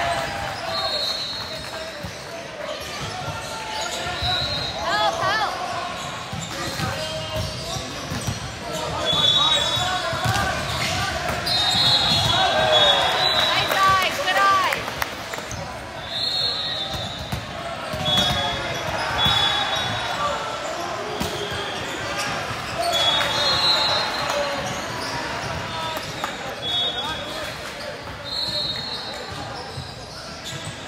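Gym noise during volleyball play: players' and spectators' voices echoing in a large hall, ball hits and knocks, and about a dozen short, high chirps scattered through it.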